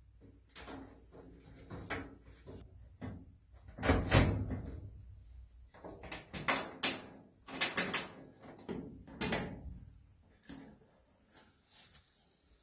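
Sheet-metal back cover of a Maytag electric clothes dryer being handled and lined up against the cabinet: a series of irregular metal rattles and bumps, the loudest about four seconds in, then near silence for the last two seconds.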